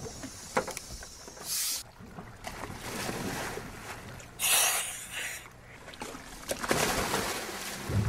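Water splashing at a boat's stern, with a few separate splashes, the loudest about four and a half seconds in, over a low steady rumble and some wind.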